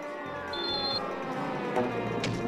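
Cartoon music and sound effects: a long falling pitch glide, a brief high steady tone about half a second in, and a thump near the end as a running character falls flat.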